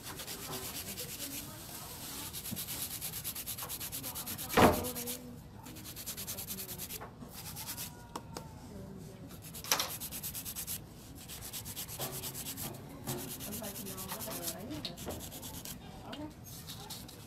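Hand nail file rasping over an artificial nail in quick back-and-forth strokes, shaping the nail. One loud knock about four and a half seconds in.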